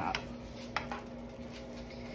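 A plastic spoon stirring beef and onions in a thickening sauce in a nonstick skillet, with a couple of light clicks against the pan early on. Under it runs a faint steady hiss from the sauce heating toward a boil.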